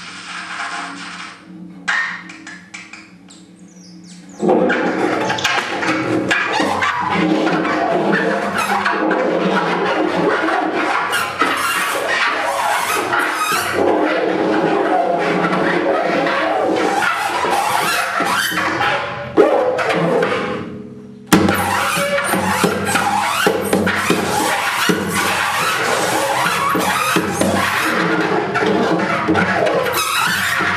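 A live band playing loud, dense, noisy music. A quieter steady drone comes first, the full sound starts abruptly about four seconds in, breaks off briefly about twenty seconds in, and comes back.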